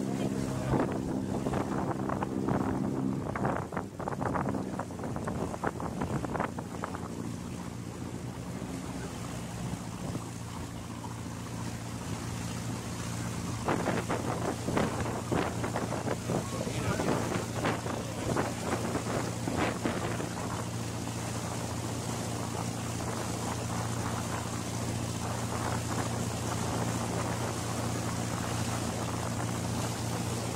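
Passenger boat's engine running steadily with a low hum, its note shifting about four seconds in, with wind buffeting the microphone.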